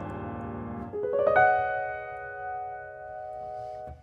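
Grand piano playing alone. Earlier notes fade, then a chord builds up note by note about a second in, is held as it dies away, and is damped just before the end.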